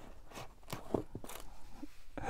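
Coil of black braided PTFE hose being gripped and lifted out of its cardboard box: several faint crinkles and scrapes of handling.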